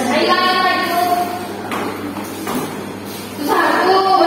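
Women's voices talking in a room, with a lull in the middle and the talking picking up again near the end.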